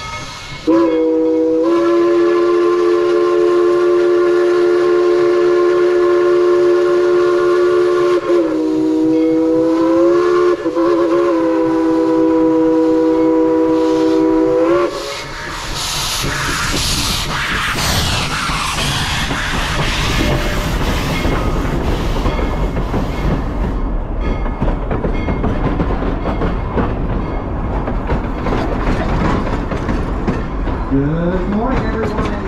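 Steam locomotive whistle blowing one long blast of about fourteen seconds, its pitch sagging and wavering partway through. Then the locomotive passes close with a loud hiss of steam blowing from around its cylinders, and the coaches follow, rolling by with clicking wheels.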